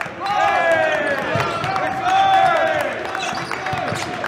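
Basketball shoes squeaking on a hardwood court in a run of short, gliding squeals, with basketballs bouncing on the floor.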